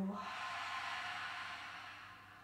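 A woman's long, audible sigh out through the mouth: a breathy exhale that fades away over about two seconds.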